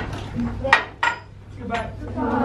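Clatter of things being handled on classroom desks: a few sharp knocks and clinks, three distinct hits in the second half, under faint voices.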